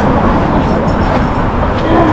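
Busy street ambience: a steady low rumble of road traffic mixed with the scattered voices of a crowd walking by.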